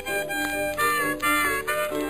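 Blues harmonica playing an answering phrase of several held, slightly bent notes right after a sung line, on a late-1920s recording.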